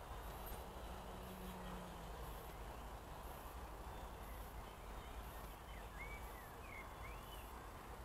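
Faint field ambience: a steady low rumble and hiss, with three or four short, curling bird chirps near the end.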